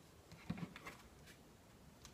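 A few faint taps and a soft knock in the first second as a phone is picked up off a desk, then near silence.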